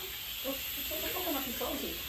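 Faint, distant voices over a steady background hiss.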